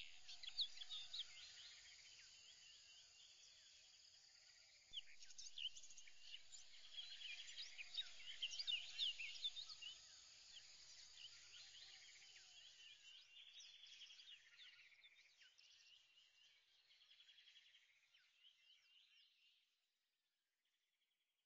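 Faint chorus of birds chirping, many short rising and falling calls over a soft hiss, swelling about five seconds in and fading away toward the end.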